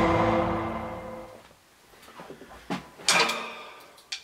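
Drum kit played with wooden sticks: a loud hit with a ringing tone that dies away over about a second and a half, then a few sharp drum and cymbal strikes, the loudest about three seconds in.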